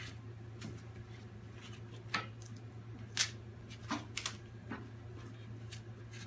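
Scuba tank cam strap and cam buckle being pulled and worked by hand: a series of short rustles and clicks, irregularly spaced, over a steady low hum. The strap will not tighten and stays loose, which is later traced to the strap being threaded through the buckle the wrong way.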